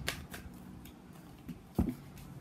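A deck of tarot cards being shuffled overhand, with a few short flicks and riffles of the card edges. Near the end a louder sharp click as a card is put down on the cloth-covered table.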